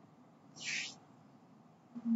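A single short, soft breathy hiss about half a second in, the narrator drawing breath between sentences, with near-silent room tone around it.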